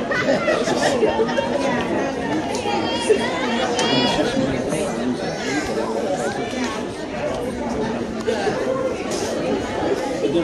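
Indistinct chatter of several spectators talking over one another, with one short sharp knock about three seconds in.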